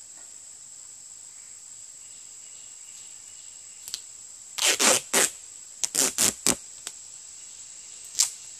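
Duct tape being ripped off the roll in short rasping pulls: a cluster of about three roughly halfway through and about four more a second later. A steady high-pitched insect drone sounds underneath throughout.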